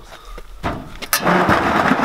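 A corrugated iron sheet rattling and scraping as it is dragged aside from a doorway, starting about half a second in with a sharp clang just after a second, then a loud continuous rumbling rattle.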